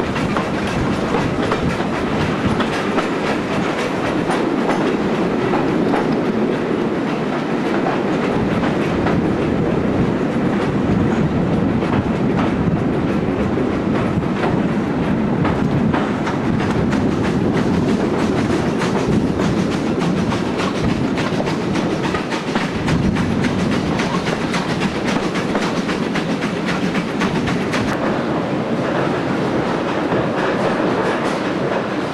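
Heritage passenger train running, carriage wheels clicking steadily over the rail joints over a continuous rumble of running noise.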